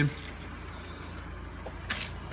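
Low, steady background hum of the room, with a brief breathy rustle near the end.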